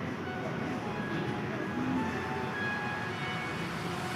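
Steady background noise of a large church with a standing congregation, with a few faint, brief tones and no distinct event.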